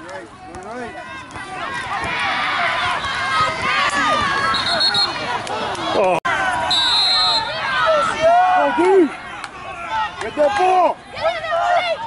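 Several spectators shouting and cheering over one another during a youth football play, many voices overlapping and rising in loudness after the first couple of seconds. Two brief high steady tones sound about five and seven seconds in, and the sound cuts out for an instant just after six seconds.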